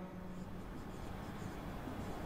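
Faint strokes of a marker writing on a whiteboard.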